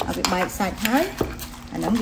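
Pestle pounding fish into a paste in a wooden mortar: a few dull thuds, with a metal spoon scraping and clinking against the bowl.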